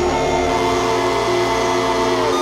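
Electronic drone music from modular synthesizers: many sustained tones layered over a low hum and a wash of noise.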